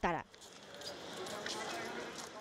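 A narrator's last word, then a steady background hiss of location ambience with a few faint knocks around the middle.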